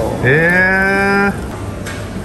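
A single drawn-out vocal call, about a second long. It dips and rises at the start, then holds on one steady pitch and stops abruptly.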